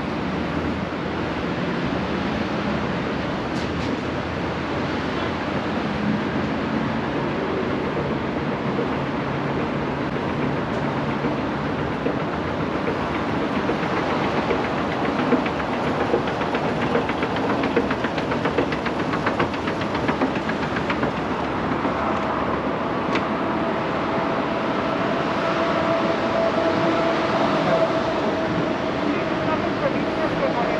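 Escalator running, with a steady mechanical hum and a fine rapid clatter from its moving steps. A steady tone joins in during the last several seconds.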